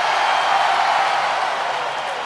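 Large arena crowd cheering, a steady wash of noise that slowly dies down.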